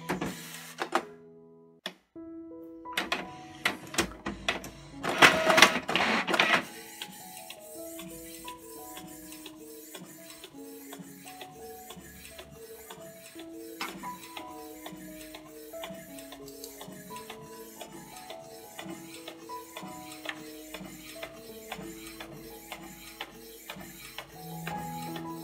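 Canon Pixma G3000 inkjet printer pulling in a sheet and printing: loud clicks and mechanical rattling about three to six seconds in, then quieter printing under background music with a gentle melody.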